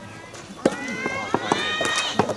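A long high-pitched shouted call that starts about half a second in, rises and is held, typical of soft tennis players' or teammates' cries between points. A few sharp knocks sound around it.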